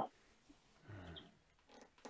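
A short, faint, low-pitched vocal sound about a second in, like a brief grunt or murmur, with a tiny high chirp just after it.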